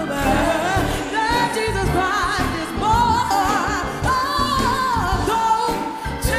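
Female gospel singers singing live with vibrato and sliding, ornamented runs over instrumental backing.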